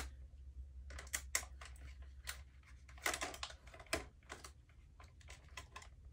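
Clear plastic blister tray of an action-figure package being handled while the tape holding it is cut: irregular sharp clicks and crackles of stiff plastic, bunched together about three seconds in, over a steady low hum.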